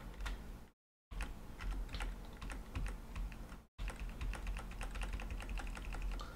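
Computer keyboard keys clicking as menus are stepped through: scattered key presses, then a fast run of taps, several a second, about four seconds in, over a faint low hum. The sound cuts to dead silence briefly twice near the start.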